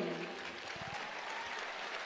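Audience applauding lightly and steadily in a large ice arena.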